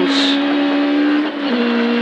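Proton Satria 1400S rally car's four-cylinder engine at high revs, heard from inside the cabin under full power on gravel; about one and a half seconds in the revs drop to a lower note.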